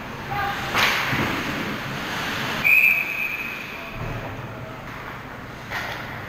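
A referee's whistle blown once in a single steady blast of about a second, stopping play in an ice hockey game. A sharp knock, a stick or puck hit, is heard shortly before it, over the steady noise of the rink.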